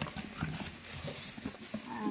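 Faint handling noise: cardboard box flaps and plastic-wrapped packaging rustling and clicking irregularly as the box is opened.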